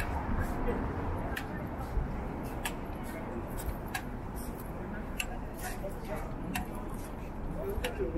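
City street ambience: a steady low rumble of road traffic, with footsteps on a concrete sidewalk as light clicks about twice a second.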